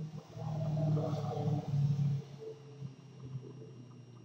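A low hum of a few held notes that step in pitch, loudest in the first two seconds and then fading away.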